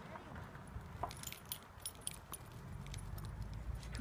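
Faint metallic jingling: a run of small, quick clinks in the middle, over a steady low rumble.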